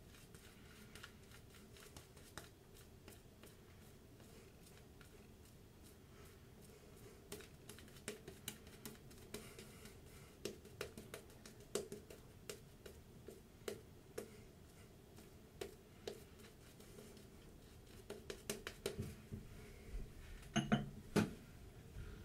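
Safety razor strokes scraping stubble through shaving lather: faint, crackly scratching in short runs that come more often after the first few seconds. A short, louder pitched sound stands out near the end.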